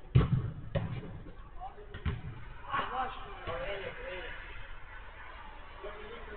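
Three sharp thuds of a football being struck in play, the first the loudest, followed by players shouting to each other.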